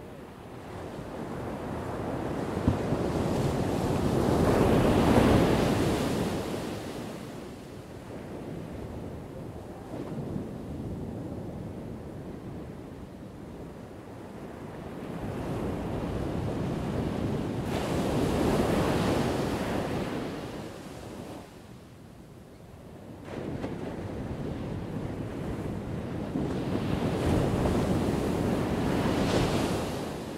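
Ocean surf breaking and washing in, rising and falling in three long surges, the loudest about five seconds in.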